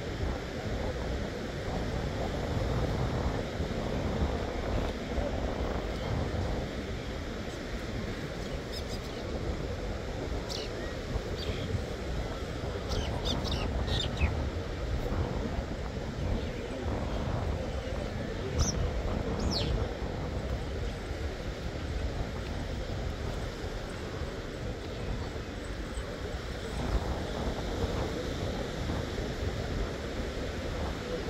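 Open-air beach ambience: a steady rush of wind and surf, with a few short bird chirps scattered through the middle.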